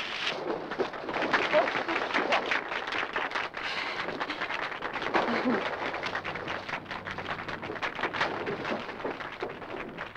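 Water splashing and churning in a diving tank as a diver plunges in and thrashes back to the surface, with a few faint voices under it.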